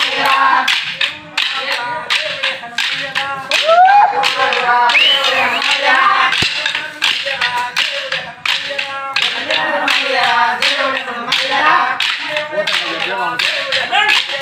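Wooden kolatam dance sticks clacking together in a steady rhythm, about two strikes a second, while a group sings.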